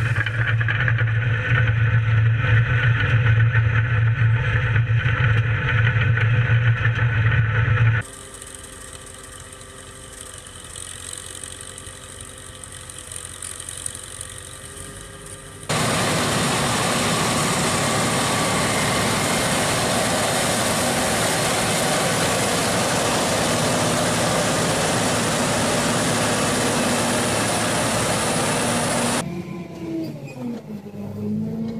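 Farm machinery engines in three successive cuts: a loud engine running with a strong low hum, then after about eight seconds a quieter machine with a steady hum. From about halfway, a John Deere basket cotton picker harvesting, running with a steady, dense, even noise until a cut near the end.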